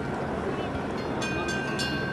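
Twin D-436TP turbofan engines of a Beriev Be-200 amphibious jet droning steadily as it flies past. About a second in, a short high-pitched electronic buzz cuts in over it.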